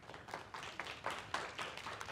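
Faint, scattered clapping from a few people, quick irregular claps applauding a correct quiz answer.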